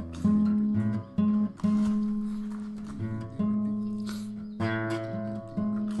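Acoustic guitar playing an instrumental passage of a song, with low bass notes changing about every second and a fresh strum or chord roughly each second.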